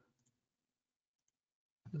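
Near silence with two faint, short computer-mouse clicks while software menus are searched.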